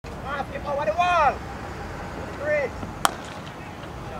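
Shouted calls from players, then about three seconds in a single sharp crack as the hard cricket ball strikes at the batsman's end.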